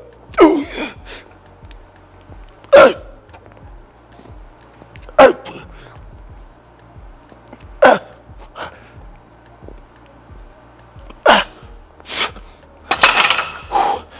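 A weightlifter's short, forceful grunts and exhalations, one about every two and a half seconds and coming closer together near the end, as he strains through heavy barbell military-press reps. Quiet background music plays underneath.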